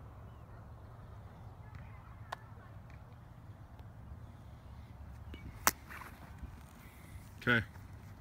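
Quiet open-air background with a low steady rumble, broken by one sharp click a little over five seconds in.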